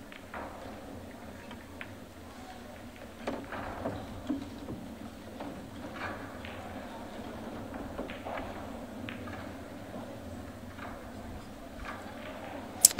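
Pool shot: the cue tip strikes the cue ball and the balls click together, in a cluster of sharp clicks about three to four seconds in, followed by a few lighter knocks over low room noise.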